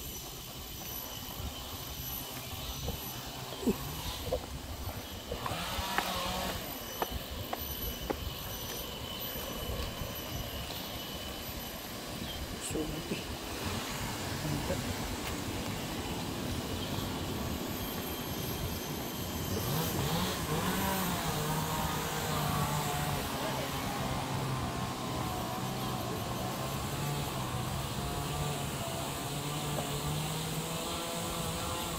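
A motor drones from about twenty seconds in, its pitch stepping up and down, over steady high-pitched tones.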